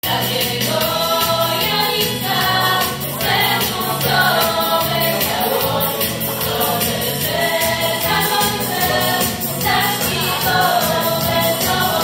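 A small group of young female voices singing a song in harmony into microphones, amplified through a PA speaker, with low instrumental accompaniment underneath.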